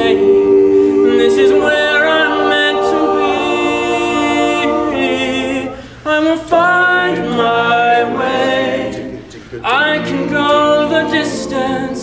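An all-male a cappella group singing held close-harmony chords in several voice parts, with short dips in loudness about six seconds in and again just before ten seconds.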